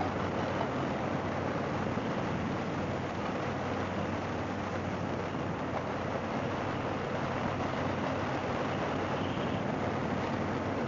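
Harley-Davidson Fat Boy's V-twin engine running at a steady cruise, heard from the rider's seat under a steady rush of wind and road noise.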